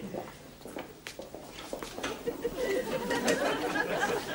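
Indistinct murmured voices that grow louder in the second half, with a few light knocks in the first second or so.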